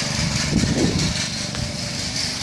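A small gasoline engine of yard equipment running steadily, with a steady hiss over it.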